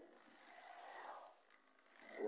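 Faint running of a model locomotive's electric motor and wheels on the track. It dies away to near silence a little past halfway.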